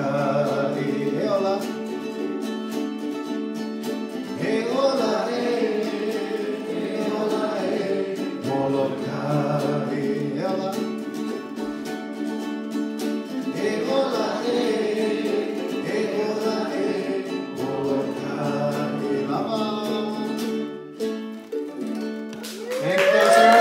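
Group of ukuleles strumming steady chords, with voices singing along in phrases every few seconds; the music dies away near the end.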